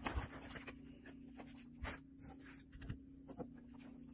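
A sheet of fresh pasta dough being handled and run through a hand-cranked chrome pasta roller: soft rubbing and scraping with a few sharp clicks, over a steady low hum.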